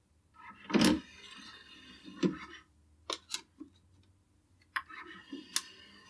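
Schiit Urd CD transport's disc tray being loaded: a sharp click, then a short faint mechanical whir as the tray moves out, followed by several light clicks and taps as a CD is set into it.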